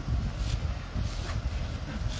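Low, steady rumble of a tractor engine pulling under load while towing an old caravan, with wind buffeting the microphone.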